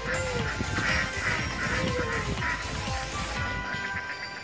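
A flock of ducks quacking repeatedly, a quick run of short calls, over background music.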